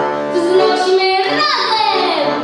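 A young girl singing a Polish Christmas carol (kolęda) into a microphone, with accordion accompaniment. Her voice slides downward in one long glide near the end.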